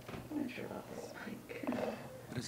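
Low, indistinct voices: speech too quiet for any words to be made out.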